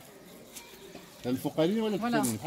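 A quiet second, then a person's voice comes in about a second and a quarter in, rising and falling in pitch.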